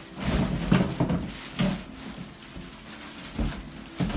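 Clear plastic wrapping on stroller parts crinkling and rustling in irregular bursts as it is handled.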